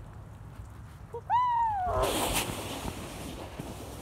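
A single high-pitched cry a little over a second in, rising and then falling in pitch over about half a second, followed by a short burst of hissing noise.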